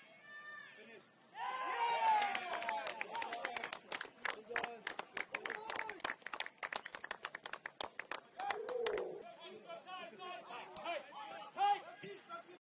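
Spectators shouting and cheering with rapid clapping, breaking out about a second and a half in and dying down after about nine seconds, then quieter chatter.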